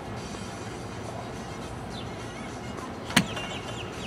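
A golf club strikes a ball off an artificial-turf hitting mat: one sharp crack about three seconds in, over steady outdoor background noise.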